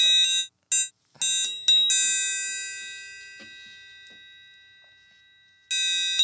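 Sampled orchestral triangle from a free Kontakt library being played: a string of quick strikes over the first two seconds, the last one left to ring out and fade for nearly four seconds, then a fast roll starting near the end.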